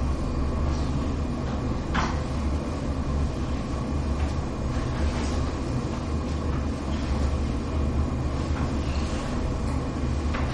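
Steady low hum of room noise, with faint rubbing of a cloth duster wiping a chalkboard and a light knock about two seconds in.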